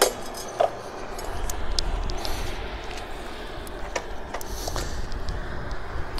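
Electric bicycle rolling along an asphalt road. There is a low rumble of wind and road noise, with scattered light clicks and rattles.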